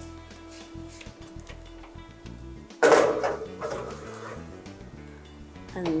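Background music, with a single loud clatter about three seconds in, fading over a second, as a metal cake tray is put into the oven.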